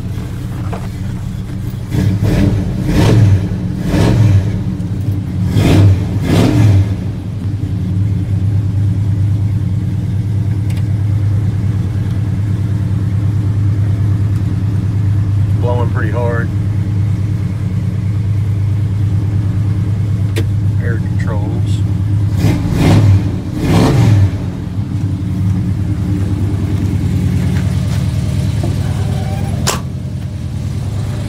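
Small-block 350 V8 of a 1974 Chevrolet C10, with aluminum heads, headers and Flowmaster mufflers, running steadily. The throttle is blipped several times in the first seven seconds and twice more around the 23-second mark, heard from inside the cab.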